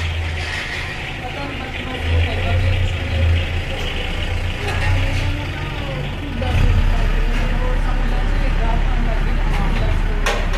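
A steady low rumble that grows louder about six and a half seconds in, with faint voices in the background.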